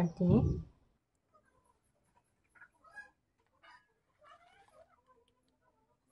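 A woman's voice trailing off in the first second, then near silence with a few faint, short sounds.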